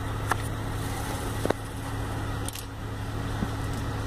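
A Honda's engine idling, a steady low hum heard from inside the car's cabin, with a couple of faint clicks.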